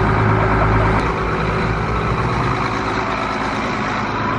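Diesel farm tractor engine running under load while towing a car on a chain: a steady low drone that turns into a rougher, pulsing throb about a second in.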